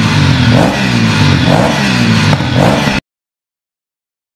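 An engine being revved over and over, its pitch rising and falling about once a second, then cutting off suddenly about three seconds in.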